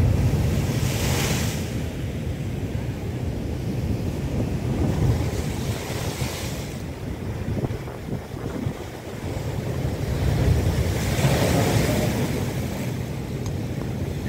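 Storm surf whipped up by a cyclone, breaking and washing over rock boulders, with strong wind buffeting the microphone as a steady low rumble. Waves crash in hissing swells about a second in, around six seconds, and again near eleven seconds.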